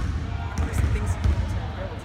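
Basketballs bouncing on a hardwood gym floor, repeated low thumps of dribbling, with a sharp knock at the very start.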